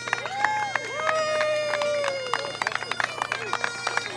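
Bagpipes playing over their steady drone, with a group cheering and clapping. Two long, drawn-out whoops come in the first half, the second one falling away at its end.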